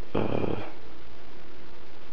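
A single short vocal sound, about half a second long, shortly after the start, over a steady background hum.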